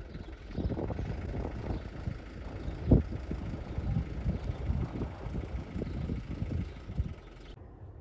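Wind buffeting the microphone outdoors: an uneven low rumble with one sharper gust about three seconds in.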